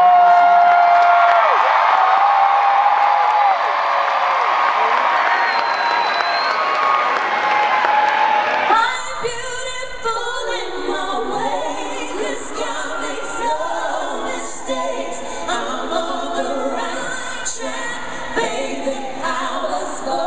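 Female voices singing a cappella in close harmony, a lead with three backing singers. For the first nine seconds long held notes sit over crowd noise, then the sound changes abruptly to clearer layered harmonies.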